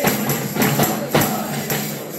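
A group of men carolling with a side drum, hand claps and a jingling tambourine keeping a steady beat, their voices in the mix.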